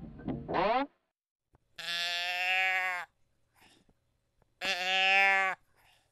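A distorted guitar passage cuts off just under a second in, followed by two long, steady, bleat-like calls, each lasting about a second, roughly three seconds apart with silence between them.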